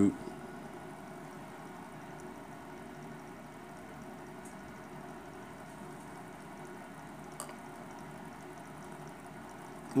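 Quiet room tone: a steady, even background hiss and hum, with one faint click about seven seconds in.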